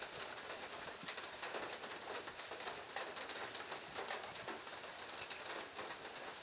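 Rain falling steadily, heard faintly as an even patter of drops.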